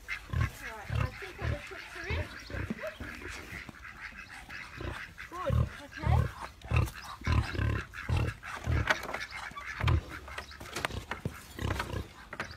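A domestic pig grunting over and over, short low grunts coming about one or two a second.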